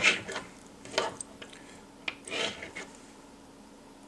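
Fingers and tying thread rubbing against a fly held in a fly-tying vise as wraps of thread are laid over goose-biot wings: a few brief rustling scrapes, the loudest right at the start, then others about a second and about two and a half seconds in.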